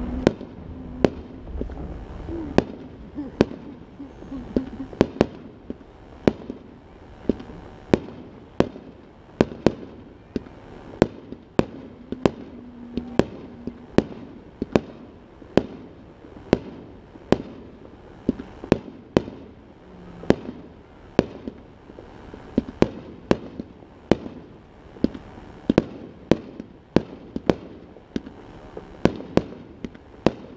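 Fireworks display: a steady run of sharp bangs from bursting shells, about two a second.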